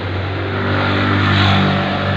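A motor vehicle engine running with a steady low hum, growing louder to a peak about one and a half seconds in, then easing off.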